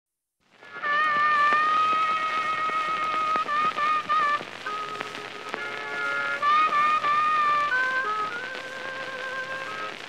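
Blues harmonica playing a solo introduction in held, bending notes over the hiss and crackle of a late-1920s 78 rpm record.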